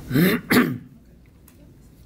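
A man clearing his throat: two short, rough bursts in quick succession within the first second.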